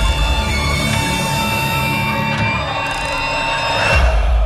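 Horror trailer score: several high tones held steadily over a deep low rumble, swelling slightly near the end.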